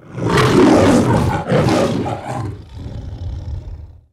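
The MGM studio logo's lion roar: two loud roars, then a quieter low growl that cuts off suddenly near the end.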